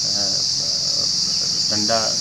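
Steady, high-pitched insect chorus that runs without a break beneath a man's speech.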